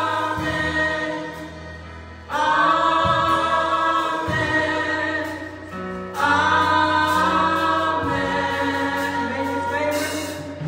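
A gospel praise team of several singers singing together in harmony over sustained low instrumental notes, with new sung phrases coming in about two and six seconds in.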